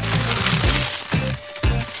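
A jingling money sound effect of showering coins, fading out after about a second and a half, over background music with a bass beat.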